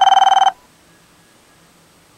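A telephone ringing: a loud, rapidly warbling electronic ring that cuts off about half a second in, leaving only faint background hiss.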